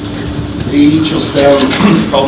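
Speech: after a short lull, a voice starts talking about a second in, its words not made out.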